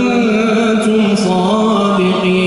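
A man's voice reciting the Quran in a melodic chant, holding long notes with ornamented turns of pitch and a couple of brief hissed consonants about a second in.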